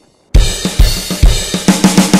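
Background music: after a brief silence, a drum kit starts a quick, steady beat with kick drum, snare and cymbals about a third of a second in.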